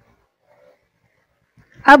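Near silence, then a woman's voice begins speaking just before the end.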